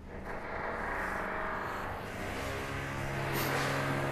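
A steady mechanical drone like a running motor sets in just after the start. A low steady hum joins it about halfway through.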